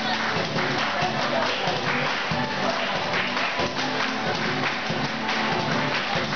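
Student tuna ensemble playing: Spanish guitars and a bandurria strumming together with a tambourine shaking along.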